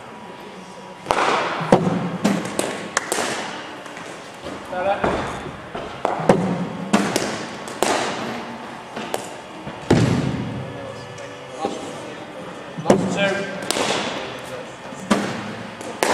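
Cricket balls knocking off bats and the hard floor in an indoor sports hall: a dozen or so sharp cracks and thuds at irregular intervals, each ringing on in the hall's echo.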